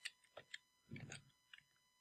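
Faint clicks at a computer, four or five separate ones in near silence, with a soft low sound about a second in.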